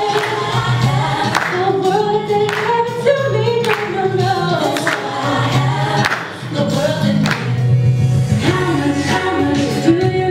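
A woman singing a gospel song into a handheld microphone over instrumental accompaniment with bass and percussion. Her voice drops out briefly about six seconds in, then the singing resumes.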